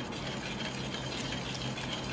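Wire whisk beating a warm milk, sugar and jaggery mixture with melting butter in a steel bowl: a steady soft sloshing with light clicks of the wires against the bowl.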